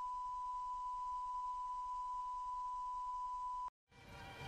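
Steady 1 kHz test tone, a single pure sine beep of the kind that goes with a TV test card, cutting off suddenly near the end.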